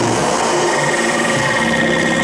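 Electronic sound effects from a sound-system jingle: a dense, machine-like drone under a steady high whine.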